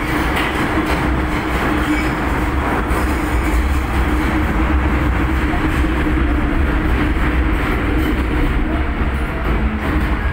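Interior of an MTR metro train car running through a tunnel: a loud, steady rumble of wheels on the track with a constant low hum from the running gear.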